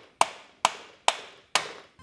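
Rubber mallet striking a metal wrench handle four times, about two blows a second, each a sharp knock that dies away quickly. The blows are there to break loose the stuck cartridge oil filter housing.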